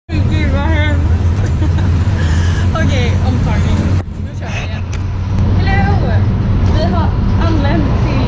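Bus engine running with a steady low drone inside the cabin, under women's laughter and chatter. The sound dips suddenly about halfway through, then picks up again.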